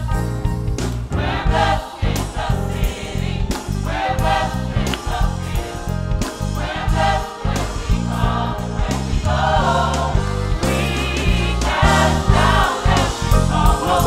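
Gospel choir singing in harmony, backed by a live band of keyboard, bass guitar and drums with a steady beat.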